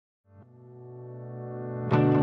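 Music starting from silence: a low sustained keyboard chord fades in and swells steadily, and a fuller, louder band sound enters just before the end.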